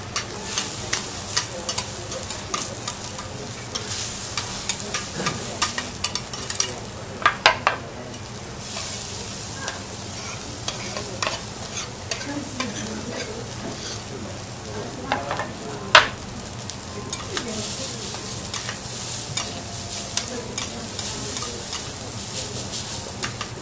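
Food frying and sizzling in a hot pan, with utensils clicking and scraping against it as it is stirred; a sharp knock stands out about sixteen seconds in.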